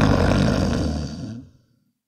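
A sleeping man's loud snore, one long breath that fades out about a second and a half in.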